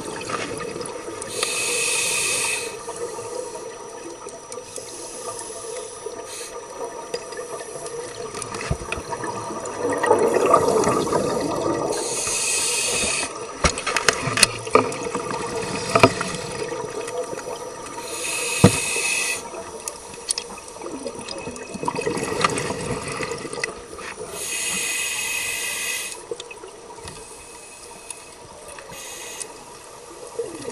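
Scuba regulator breathing underwater: four hissing inhalations about six seconds apart, alternating with the gurgling rush of exhaled bubbles, which is the loudest sound. A few sharp clicks come in the middle.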